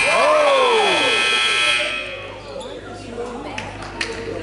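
Gym scoreboard buzzer sounding one steady tone that cuts off about two seconds in, with a person's shout rising and falling over its first second.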